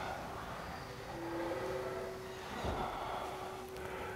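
Quiet room tone with a faint steady hum and soft, slow breathing during a calming breath.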